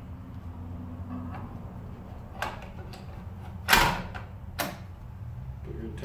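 A battery being slotted into the side compartment of a Trimble robotic total station: a click, then a loud sharp snap a little past the middle, then another click as it seats in place.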